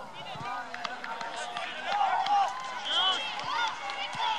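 Overlapping shouts and calls of players and spectators across an open soccer field during play: many short, rising-and-falling voices at different distances, loudest about two and three seconds in.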